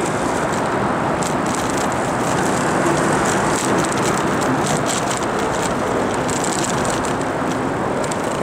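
Steady road and traffic noise heard from a moving bicycle under an interstate overpass, with scattered faint clicks.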